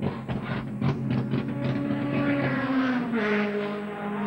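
Touring race car engine running, with the revs dropping and settling about two and a half to three seconds in.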